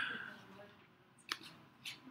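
Two sharp computer mouse clicks about half a second apart, after a brief voice sound fading away at the start.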